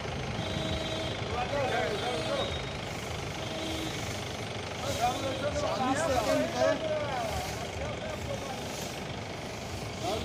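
Outdoor street noise with people talking in the background, and a steady engine hum from a vehicle during the first four seconds.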